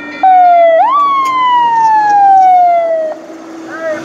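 A loud wailing tone like a siren: it rises sharply, then falls steadily in pitch for about two seconds and cuts off. A few short rising-and-falling wails follow near the end.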